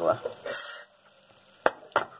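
Sugar-and-water syrup, just starting to caramelize, sizzling briefly in a small stainless steel pot, followed near the end by two sharp clicks about a third of a second apart.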